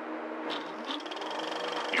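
Steady low hum and hiss of an old film soundtrack, with a faint high steady tone joining about a second in.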